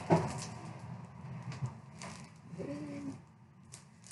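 Rummaging in a desk drawer: a knock at the start, then soft rustling and small clicks as things are moved about, with a short pitched squeak or hum about three seconds in.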